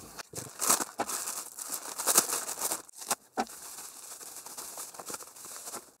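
Clear plastic protective bottle wrapping crinkling and tearing as it is cut open with a knife and pulled off two bottles. The rustling is loudest in the first half and fainter after about three seconds.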